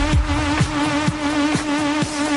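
Techno music: a steady four-on-the-floor kick drum about twice a second under a sustained, wavering, buzzy synth tone, with the deep bass thinning out about a second in.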